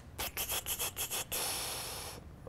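Rubbing noise: a quick run of about six short scraping strokes, then a longer steady hiss.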